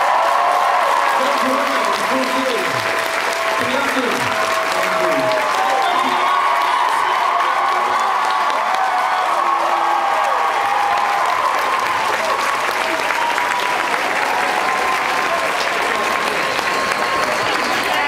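Large audience applauding and cheering, with many high whoops and shouts over the clapping, as a panel ends.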